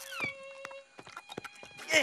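Cartoon sound effects: a short falling whistle-like glide, then a held tone, with scattered clicks and a louder burst near the end.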